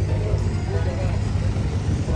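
Wooden abra water taxi's inboard diesel engine running with a steady low rumble alongside the dock, under faint background voices.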